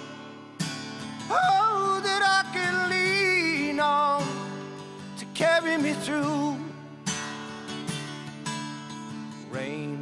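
Solo acoustic guitar strummed steadily under a man's voice singing long, drawn-out notes with vibrato, with short gaps between the sung phrases.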